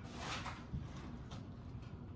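Soft rustle of linen cross-stitch fabric being folded by hand, a brief swish near the start followed by a couple of faint small handling clicks.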